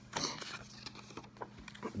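Handheld paper index cards being swapped and shuffled: soft rustles and light clicks, with a few sharper ticks near the end, over a faint steady hum.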